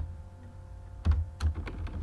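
Computer keyboard being typed on: a quick, uneven run of key clicks, mostly in the second half, over a low steady hum.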